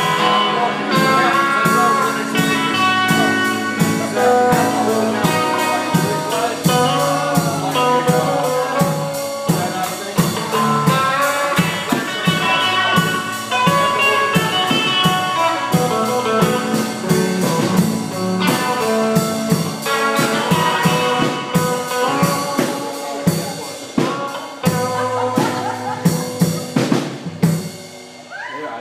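Live blues-rock band playing, led by a drum kit and electric guitar, with a run of hard drum hits near the end as the song finishes.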